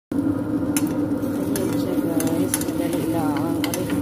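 Chapati frying in a nonstick pan: a steady low sizzle with a few light clicks of a spatula against the pan.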